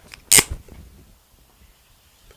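A single sharp click about a third of a second in, a dry-erase marker's cap pulled off, followed by a few faint ticks.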